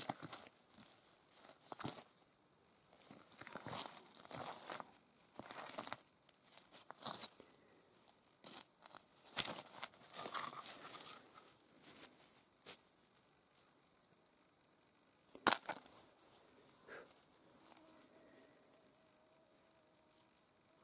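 A hand rubbing and handling a chunk of quartz over dry leaves and rock fragments: quiet, scratchy rustling and scraping in short, irregular bursts, with one sharp click about three-quarters of the way through.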